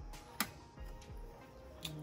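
A sharp click from the small plastic feeding flap in an aquarium lid as it is worked by hand, with a fainter tap just before it and another near the end.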